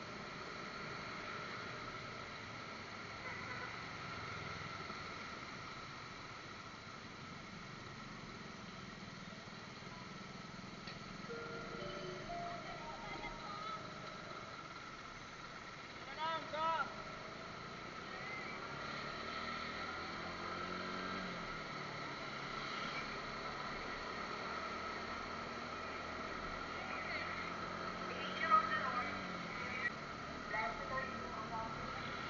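Steady motorcycle riding noise picked up by a budget helmet-mounted action camera: engine and road noise, with a lower engine note shifting in pitch about two-thirds of the way through.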